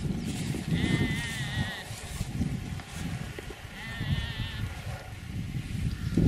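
A farm animal bleating twice, each call short and wavering, about a second in and again about four seconds in, over a continuous low rumbling noise.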